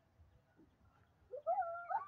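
A child's high, drawn-out call that rises and wavers in pitch, starting about a second and a half in after a faint stretch.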